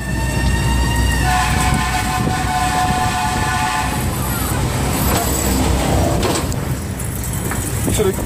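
A horn-like sound: a held tone that rises slightly, then a chord of several notes held for about three seconds, over loud fairground noise.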